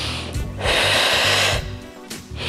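A forceful breath through the mouth, a hiss lasting about a second in the middle, with a shorter one at the very start, as an exerciser breathes in time with crunches. Background music with a steady low beat runs underneath.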